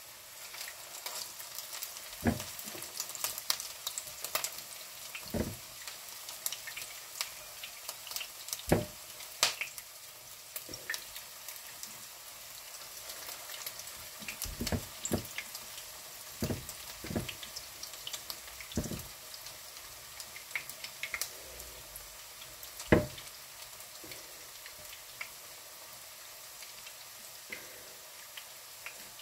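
Ground-meat and vegetable patties frying in hot oil in a frying pan: a steady sizzle full of small crackles and pops. Several dull knocks sound through it, the loudest about three quarters of the way through.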